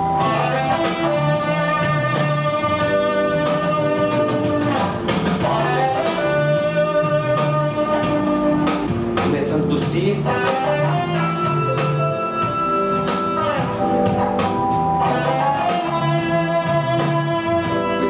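Stratocaster-style electric guitar playing a melodic line of single picked notes, some held for two to three seconds, improvising phrases of three stepwise notes followed by a leap of a third.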